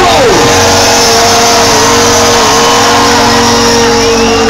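Live rock band holding the final sustained note of the song, one long steady pitch with a slight wobble. A pitch slides downward in the first half-second.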